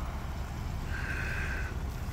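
Low steady rumble of idling vehicles, with a single steady high-pitched beep lasting just under a second, starting about a second in.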